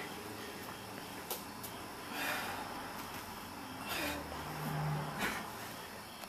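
A woman breathing hard from exertion, with about three short, forceful exhales a second or two apart as she strains through the last rep of an ab exercise.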